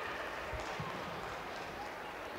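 Faint ambience of a sparsely filled football stadium, an even hiss with a few soft low thumps about half a second in.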